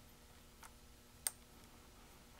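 Near silence with two small clicks, a faint one a little past half a second in and a sharper one just past a second: a brass SMA coax connector being fitted to the input port of a tinySA spectrum analyzer.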